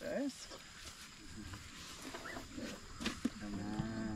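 Asian elephant being hand-fed, with faint breaths from its trunk and the sounds of it eating. A brief low human murmur comes near the end.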